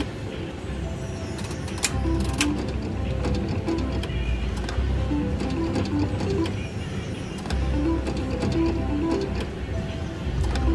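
Reel Em In! Catch the Big One 2 slot machine being played spin after spin: its mechanical reels whirring and stopping with a few sharp clicks, under the machine's short repeating electronic tune.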